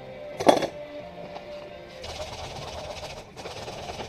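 Radio music playing in the background, with one sharp knock about half a second in. From about two seconds on comes a scratchy rasp of sandpaper being rubbed by hand along an African padauk hatchet handle.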